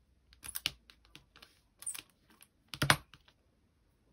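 A small wire-handled hand roller and a linocut block being handled on a worktable: a series of irregular light clicks and taps, the loudest knock about three seconds in.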